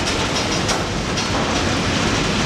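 Railroad car rolling along the track, with a steady rumble of wheels on rail and a few faint clicks from the rail joints, heard from the car's open end platform.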